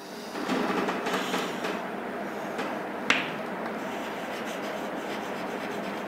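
Chalk scratching on a chalkboard as words are written, with one sharp tap of the chalk on the board about three seconds in.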